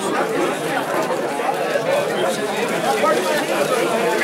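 Crowd chatter: many people talking at once in a room, no single voice standing out.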